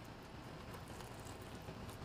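Faint chewing of a bite of apple fritter doughnut, mouth closed.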